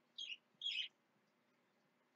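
A bird chirping twice, two short high notes about half a second apart, the second louder and longer.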